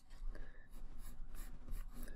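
Pencil lead scratching on paper in a series of short strokes as a curve is drawn freehand.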